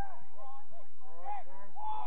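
Men shouting calls across a football pitch, heard from a distance: a few short, arched shouts, the loudest two in the second half.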